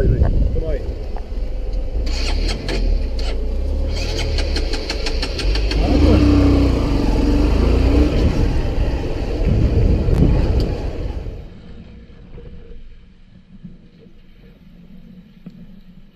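Motorcycle riding off with its engine running loudly on a helmet camera, with a run of sharp clicks early on and a held tone in the middle. The sound drops much quieter about eleven seconds in.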